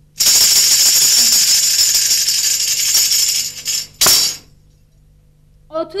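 A tambourine shaken in a continuous jingling roll for about three and a half seconds, then struck once sharply with a short ring, the traditional shadow-play def marking a scene change.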